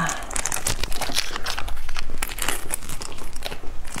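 Plastic seasoning sachets for instant fire noodles crinkling and crackling in the hands as they are torn open and squeezed out over the noodles, in many quick irregular crackles.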